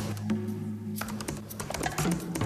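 Typing on a laptop keyboard: a quick, uneven run of key clicks over background music.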